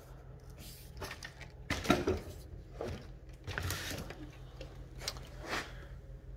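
Handling noise from a Stihl MS 661 chainsaw being turned onto its side on a workbench: several irregular short knocks and scrapes as the saw is shifted and set down.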